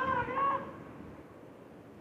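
A high-pitched voice calling out in long, drawn-out shouts, ending about half a second in; after that only faint background noise remains.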